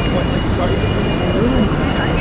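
Busy railway station concourse ambience: a steady low rumble under scattered background chatter from many passengers, with a faint steady high whine.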